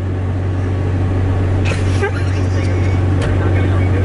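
Car engine idling, a steady low hum heard from inside the cabin, with a faint voice briefly about two seconds in.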